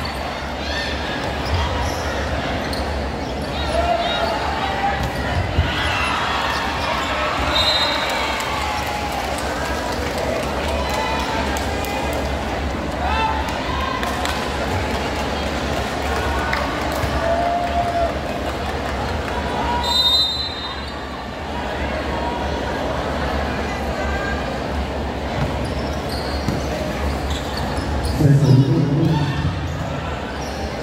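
Indoor volleyball game in a large hall: a crowd of spectators talking and shouting, mixed with the hits and bounces of the ball on the court. There is a louder, deeper burst of sound near the end.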